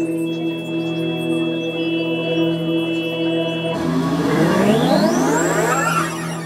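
Electronic show sound played over a venue PA: a held synthesizer chord, then, nearly four seconds in, a sweep of many tones rising steeply in pitch, like a volume knob being turned up to maximum.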